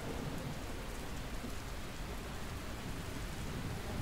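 Steady rain falling, an even hiss with no distinct drops or thunderclaps.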